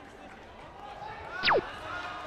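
A single quick electronic chirp sweeping fast downward in pitch about one and a half seconds in, over hall chatter, as a point registers on the scoring system.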